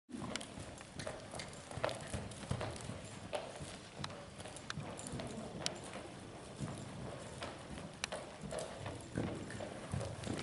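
Hoofbeats of a horse cantering on a lunge line over the sand footing of an indoor arena: an uneven run of low thuds with scattered sharp clicks.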